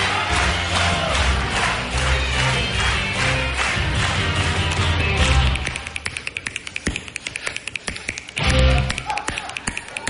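Backing music with a steady beat, then about halfway through the music drops out and rapid finger snapping into a microphone carries on alone. A short burst of music cuts in near the end before the snapping continues.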